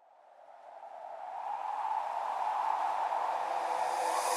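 Intro of an electronic dance track: a hissing synth swell fades in from silence, growing louder and brighter over the first two seconds, then holds steady as the build-up before the beat and vocals come in.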